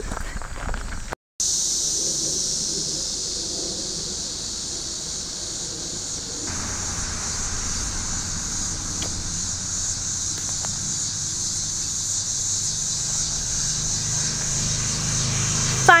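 Steady, high-pitched chorus of late-summer insects such as crickets or katydids, unbroken except for a brief dropout about a second in. A low rumble joins from about six seconds in.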